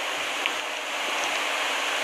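Steady, even background hiss with a faint low hum underneath, and no speech.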